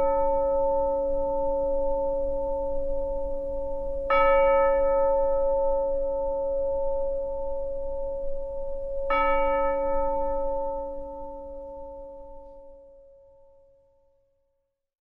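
A bell ringing out in slow, evenly spaced strokes: a stroke just before the start rings on, and the bell is struck again about four and about nine seconds in. The last stroke dies away gradually near the end.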